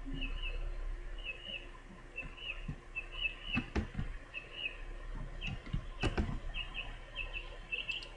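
Birds chirping in the background, short high chirps in quick pairs about once a second, with a few sharp clicks about four and six seconds in.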